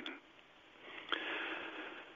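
A person drawing a breath close to the microphone: a soft airy hiss lasting about a second, starting just under a second in, with a faint mouth click near its start.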